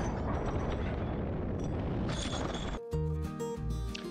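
A steady rumbling noise that cuts off abruptly near the end, when instrumental music with a deep bass begins.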